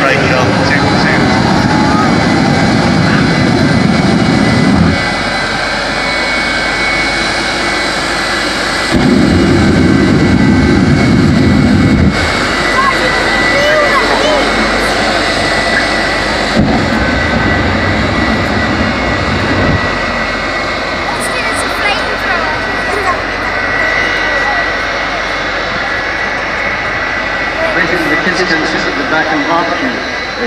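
Jet engine of a jet-powered school bus running with a steady high whine. It is lit into three loud rumbling afterburner blasts: at the start, about nine seconds in, and a weaker one about seventeen seconds in.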